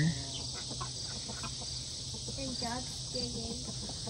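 Crickets chirping steadily in a high, even chorus, with a few short, faint chicken calls about halfway through.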